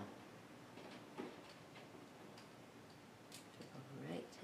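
Near silence: room tone with a few faint clicks, one about a second in and a sharper one near the end.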